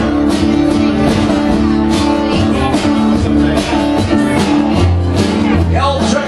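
Live band playing an instrumental rock passage: acoustic guitar strumming over an upright bass line, with drums keeping a steady beat.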